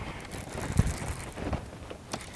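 Wind buffeting the microphone, with low thumps a little under a second in and again about a second and a half in.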